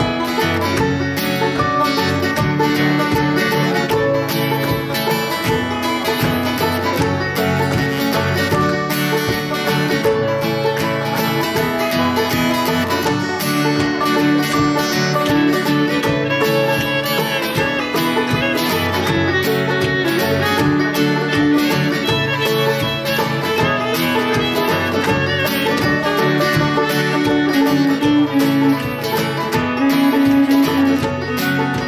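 Live acoustic bluegrass band playing an instrumental passage: banjo picking and acoustic guitar strumming, with a fiddle, at a steady, even tempo.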